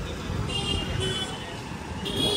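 Street traffic noise from motor scooters and other passing vehicles, a steady hum with two short, high-pitched sounds, about half a second and a second in.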